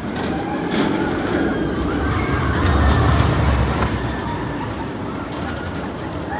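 Steel roller coaster train rumbling along its track overhead, swelling to its loudest about three seconds in and then fading.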